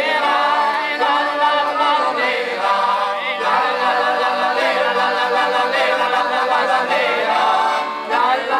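A group of men singing a traditional northern Apennine folk song together, several voices in chorus without a pause.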